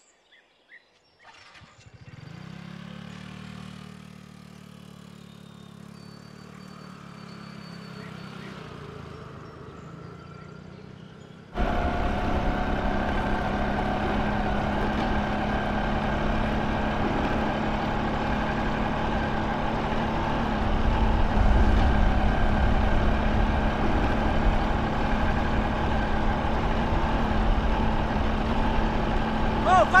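A motorcycle engine running steadily, first faint and distant, then, after a sudden cut about twelve seconds in, much louder and close up, a steady low hum for the rest of the time.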